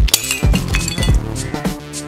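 Glass bottle shattering as a crossbow bolt hits it: a sharp crack, then about a second of tinkling fragments. Electronic background music with a steady beat plays throughout.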